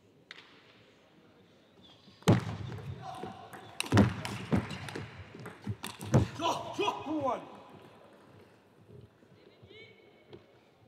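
Table tennis rally: a run of sharp knocks and clicks from the ball striking bats and table over about five seconds, with a voice calling out near the end of it.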